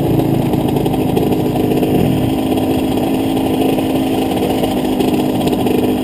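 Dirt bike engine running steadily at low speed while the bike rolls along a dirt track, its note shifting slightly about two seconds in.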